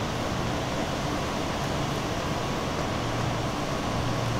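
Steady outdoor background noise with a faint constant hum, no distinct events.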